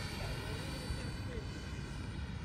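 Electric ducted fan of a Freewing T-33 80mm EDF model jet in flight, a steady distant whine.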